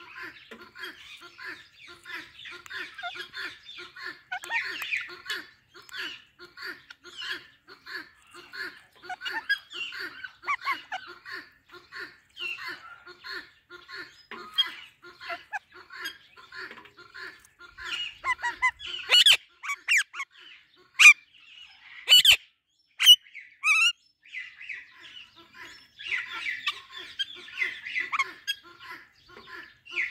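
Indian ringneck parakeets chattering in a rapid run of short notes, with a few loud, sharp squawks about two-thirds of the way through.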